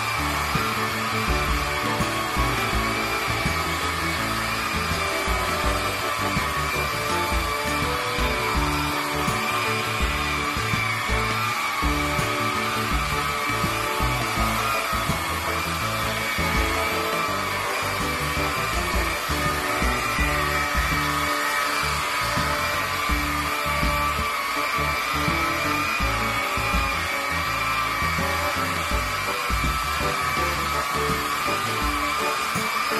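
Handheld electric angle grinder with a brush pad running steadily as it scrubs carpet tiles, a continuous high motor whine. Background music plays along.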